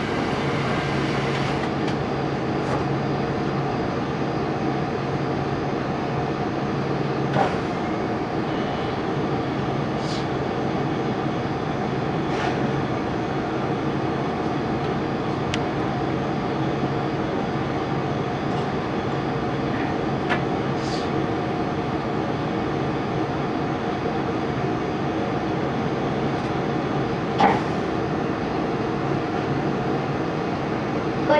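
Steady hum and rumble inside the passenger car of a 373 series electric train, its pitch unchanging, with a few scattered clicks and knocks, the loudest near the end.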